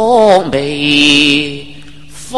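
Cantonese opera song (粵曲) with its accompaniment. A held note with a wavering vibrato slides down and ends about half a second in. A lower, steady note follows, then fades to a softer stretch near the end.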